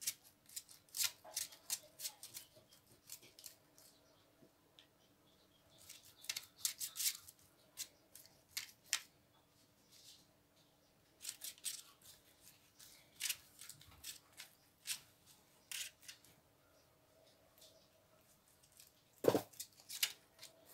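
Silicone pastry brush swishing over raw puff pastry and baking paper as beaten egg is brushed on: several runs of quick, scratchy strokes with pauses between, and a dull knock near the end. A faint steady hum runs underneath.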